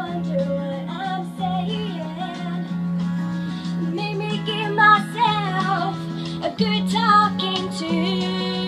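A woman singing a live country-style cover song over guitar accompaniment, with a held low note sounding beneath the melody.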